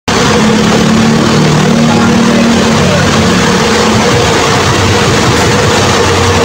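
Bus engine idling: a loud, steady rumble with a low hum and a fainter, higher steady tone.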